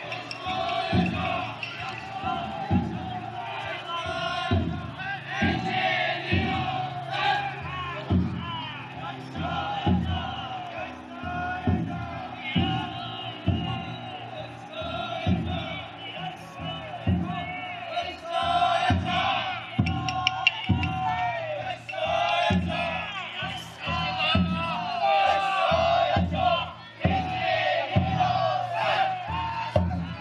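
Futon daiko bearers shouting and chanting together at full voice while the float's big taiko drum beats steadily, a little over one stroke a second.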